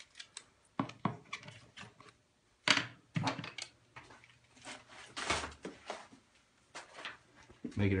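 Loose paper and debris rustling and clattering in short irregular bursts as it is handled and tossed about.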